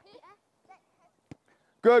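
Children's voices calling faintly, with one sharp knock a little past halfway through, then a man's voice says "Good" near the end.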